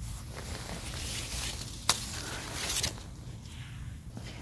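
Apple tree leaves and branches rustling as they are handled, with one sharp click in the middle and a steady low wind rumble on the microphone.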